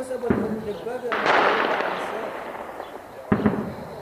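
Weapons fire during fighting: a sharp bang about a third of a second in, a louder bang just after a second in that dies away over about a second, and another sharp bang near the end. Faint voices are in the background.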